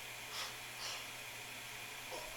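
Quiet room tone: faint hiss and a low steady hum, with two soft breaths about half a second and a second in.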